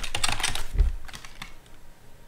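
Computer keyboard being typed on: a quick run of keystrokes for about a second, with a dull low knock among them, then a few scattered key presses as the typing slows.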